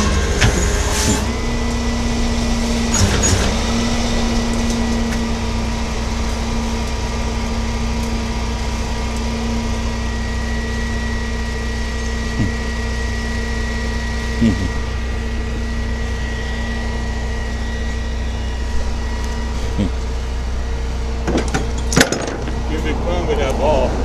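A vehicle engine idling steadily close by: a constant low hum with a faint steady whine over it, and a few sharp clicks near the end.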